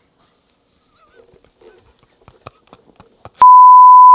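A single steady, loud test-tone beep, the kind played under broadcast colour bars, begins about three and a half seconds in after a few faint clicks.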